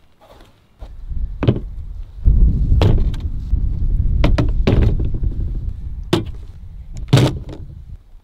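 Submachine guns and steel stick magazines being set down and handled on a plastic folding table: about six separate hard knocks and clunks spread across a few seconds, the loudest near the end.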